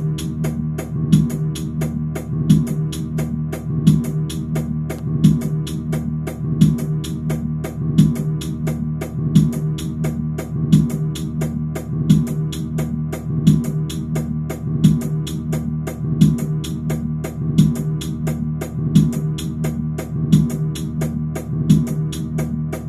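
Instrumental hip-hop beat programmed in an FL Studio step sequencer: a sustained low chord over a steady hi-hat pattern, with a kick drum about every second and a half. It cuts in suddenly at the start.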